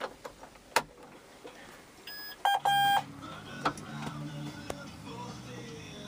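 Ignition key clicking in the cab of a John Deere 6150R tractor, then about two and a half seconds in the tractor's warning buzzer beeps twice, a short beep then a longer one, as the key is switched on. A low steady hum follows as the electrics power up ahead of cranking.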